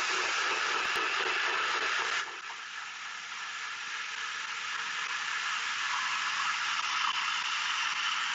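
NutriBullet Pro 900-watt personal blender running, blending kale, pineapple and coconut water. About two seconds in it gets quieter and its lower part falls away as the kale and pineapple are broken down into a smooth liquid, then it slowly grows louder again.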